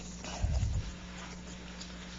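A brief dull low thump about half a second in, over a steady low hum.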